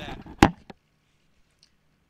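A man's voice saying a single word, then one sharp knock about half a second in.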